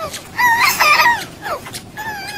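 A toddler's high-pitched wavering yell, nearly a second long, then a shorter falling cry. The voice is run through a pitch-shifting audio effect that stacks it into several tones at once, so it sounds almost like a rooster crowing.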